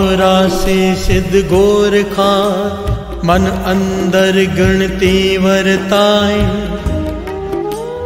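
A man singing a Sikh devotional verse in a slow melodic chant, with a steady musical drone and bass beneath. Near the end he holds one long note that bends up and back down.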